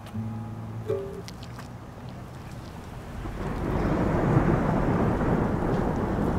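A few soft held music notes give way about halfway through to heavy rain falling with a low rumble of thunder, which swells in and then holds steady.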